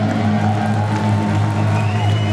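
Live heavy rock band's guitars and bass holding the song's last chord, a steady low drone ringing through the amplifiers with no drums. A faint high feedback whine rises slightly near the end.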